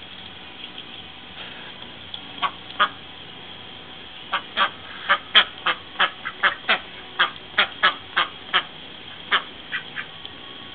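Domestic ducks, Indian Runners and Khaki Campbells, quacking: a couple of calls, then a quick run of about fifteen quacks, two or three a second.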